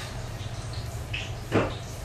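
Oil bubbling and crackling faintly around Ilocos empanadas deep-frying in a large aluminium wok, over a steady low hum. One louder knock comes about one and a half seconds in.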